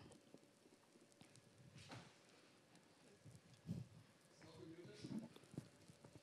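Near silence: room tone with a few faint soft knocks, the clearest about three and a half seconds in.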